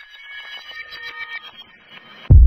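Electronic intro sting: high-pitched beeping, glitchy tones, stuttering and chopped, slowly growing louder.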